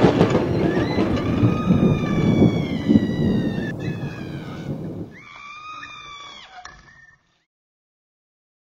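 Thunder sound effect: a rumble that fades away over about five seconds, with a high, slowly falling drawn-out tone over it, then fainter rising-and-falling tones before all sound stops about seven seconds in.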